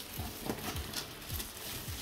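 Handling noise from unboxing a heavy hoverboard: a handful of dull knocks and bumps against the cardboard box, with faint rustling of its plastic wrap.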